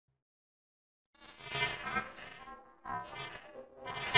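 A logo jingle distorted by a stacked pitch-shifting meme audio effect into a dense, buzzy sound. It starts about a second in, swells, drops away briefly near the three-second mark and comes back.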